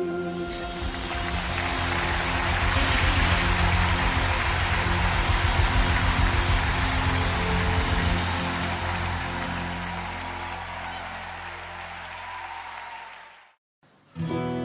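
Live worship band music at the close of a song: held chords and a pulsing low end under a dense wash of noise that swells and then fades out to silence near the end.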